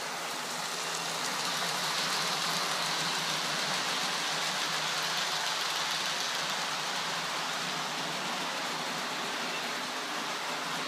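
Model train running along the layout's track: a steady rolling hiss from the wheels on the rails with a faint low hum, a little louder from about two seconds in as the coaches pass close by.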